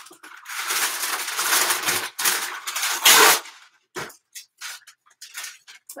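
Sheet of blowout paper rustling and crinkling as it is handled and laid in place, for about three seconds and loudest near the end, followed by a few light taps.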